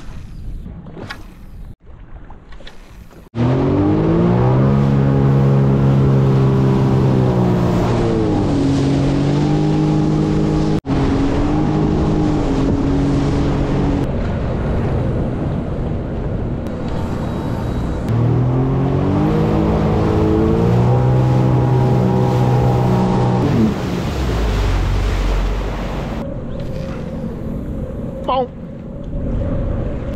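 Sea-Doo Fish Pro jet ski's three-cylinder engine running under throttle at speed, with wind and water rushing past. Its pitch climbs as it speeds up, holds steady and then drops as it backs off, twice; near the end it eases off to a lower rumble.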